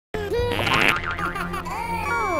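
Cartoon sound effects over background music: springy boings and sliding, warbling whistle-like tones that rise and fall.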